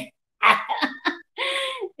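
A woman laughing: a few short breathy bursts, then one longer held laugh.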